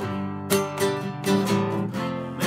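Nylon-string classical guitar strummed in a steady chord pattern, about three strokes a second, with no voice over it.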